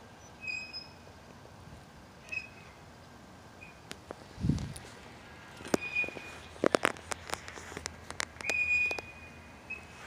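Phone handling noise: a cluster of sharp clicks and taps about six seconds in as fingers move over the phone, and a low bump a little before. A few short high-pitched chirps sound now and then, one held a little longer near the end.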